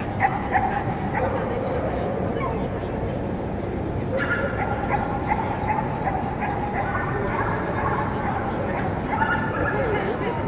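Dogs whining and yelping over a steady murmur of crowd chatter. Long, high whines come briefly at the start and then again from about four seconds in to near the end.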